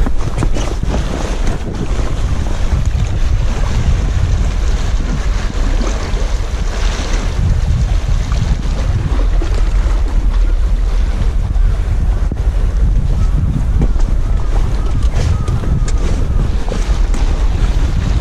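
Wind buffeting the camera microphone: a loud, steady low rumble, with sea water washing against the rocks underneath.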